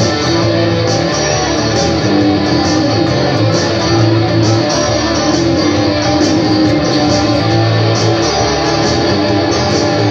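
Instrumental music: an electric guitar played live over a dense stack of looper overdubs, many layered guitar loops running together in a steady rhythm.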